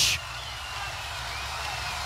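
Steady background noise of a large arena crowd, with no distinct calls or impacts standing out.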